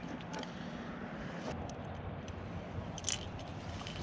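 Handling noises as a landing net and a freshly caught trout are worked by hand: soft scraping and rubbing, with a short rattle of clicks about three seconds in.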